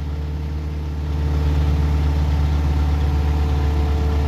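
Mini excavator's diesel engine running steadily, a little louder from about a second in.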